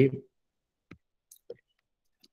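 The tail of a man's word, then a few faint, short clicks spaced apart in near quiet.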